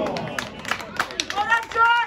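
Shouting voices of footballers calling out on the pitch, with scattered sharp knocks; the loudest is one rising shout near the end.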